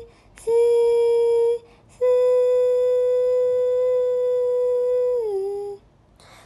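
A woman humming long, steady held notes, holding the pitch of the note Ti (about B) to steer a voice-controlled game. The first note lasts about a second. The second lasts about three seconds and slides down in pitch near the end.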